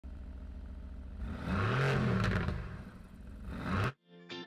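A car engine revving: it swells about a second in, its pitch climbs and falls once, swells again near the end, and cuts off suddenly.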